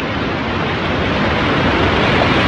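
Steady hiss of VHS tape noise with no distinct sound events, rising slightly near the end.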